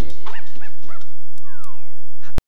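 Cartoon dog yipping and barking in short bursts over bright TV-promo music, with a falling whistle-like glide near the end.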